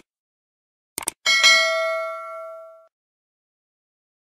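Two quick clicks, then a bright notification-bell ding that rings for about a second and a half and fades away. This is the sound effect of a subscribe-button animation: the Subscribe button being clicked and the notification bell ringing.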